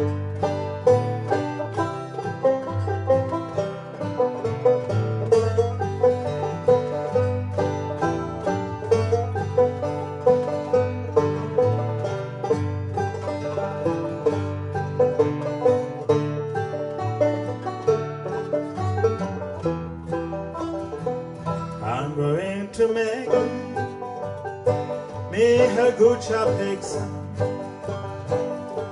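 Two banjos and an acoustic guitar playing an instrumental passage, the banjos picking a steady run of notes over the guitar's bass and chords. A wavering melody line comes in briefly twice near the end.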